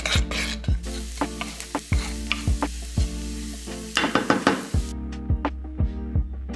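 Minced garlic sizzling in hot oil in a nonstick frying pan while a wooden spoon stirs it, over background music with a steady beat. The sizzle starts about a second in and cuts off suddenly near the end.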